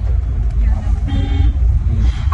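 Steady low rumble of a car on the move, heard from inside the cabin, with a faint short horn toot from traffic about a second in.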